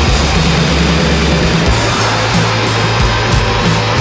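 Loud, distorted hardcore punk music: a dense wall of noisy guitar over held low bass notes that shift pitch about halfway through.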